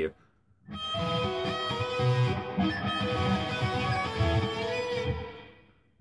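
Electric guitar tuned to drop C♯ playing a fast sweep-picked arpeggio passage from a solo, with many notes ringing over one another. It starts after a short pause and fades out near the end.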